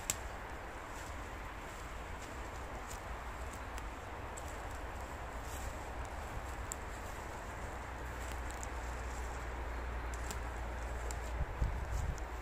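Footsteps walking over a forest floor of moss, needles and twigs, with scattered irregular sharp clicks and snaps, over a steady low rumble.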